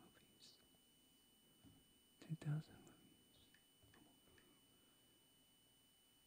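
Near silence: quiet studio room tone with a faint steady electrical whine. About two and a half seconds in comes one brief, soft murmured or whispered voice sound, and there are a few faint ticks around it.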